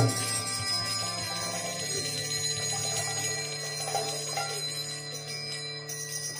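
Kirtan hand cymbals (kartals) struck once as the chanting ends, then left ringing and slowly fading, with a few faint jingles over a steady low hum.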